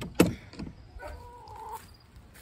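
A sharp knock just after the start, then a faint drawn-out hen call lasting under a second.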